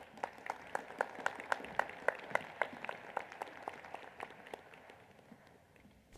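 Applause from a small, sparse audience in a large auditorium: distinct claps at about four a second, dying away near the end.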